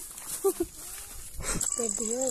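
A faint goat bleat, then a steady high-pitched insect drone, such as cicadas, starting about one and a half seconds in.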